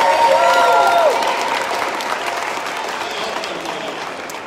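Audience applauding, with a few voices calling out near the start; the clapping is loudest at first and slowly dies down.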